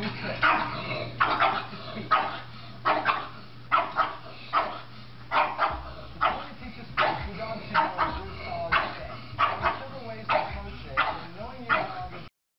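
Pug barking over and over, short sharp barks about one and a half a second, over a steady low hum.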